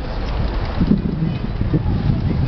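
Wind buffeting the microphone in uneven low gusts, over the general hubbub of a town square.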